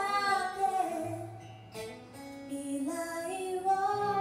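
A woman singing a slow ballad into a microphone, accompanied by acoustic guitar. Two sung phrases with a short break between them.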